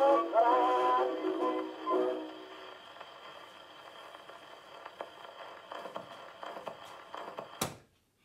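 Portable wind-up gramophone playing a shellac 78 record: the last sung notes and band of the song end about two and a half seconds in. After that the needle runs on in the groove with hiss and soft, regularly spaced clicks. One sharp knock comes near the end.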